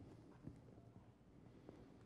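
Near silence: room tone in a conference hall, with a faint tap about half a second in.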